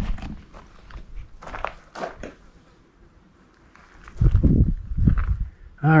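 Footsteps on gravel and rustling handling noise from a hand-held camera, with a few heavy low thuds about four to five seconds in.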